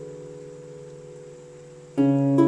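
Celtic harp notes ringing on and slowly fading after being plucked, with a new chord plucked at the very end.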